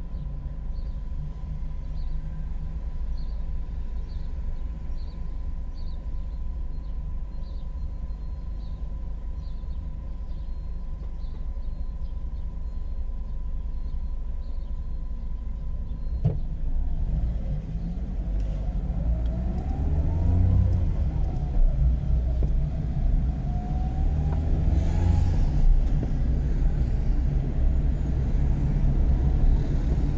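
A car driving through city streets: a steady low engine and road rumble. For the first dozen seconds there is a light, regular ticking. In the second half an engine note rises and falls a few times and the rumble grows louder.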